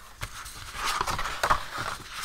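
Sheets of painted paper rustling and sliding as they are handled and spread out on a desk, with a few light taps.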